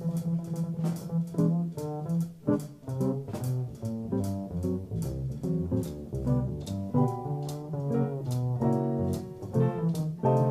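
Jazz guitar solo on an archtop electric guitar, a quick run of single notes, over plucked upright bass and drums keeping time.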